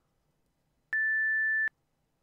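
A computer timer's alarm beep: one steady electronic tone, just under a second long, starting about a second in and cutting off sharply.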